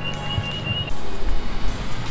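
Running noise inside a moving Bangkok BTS Skytrain carriage: a steady high whine for about the first second, then a louder low rumble.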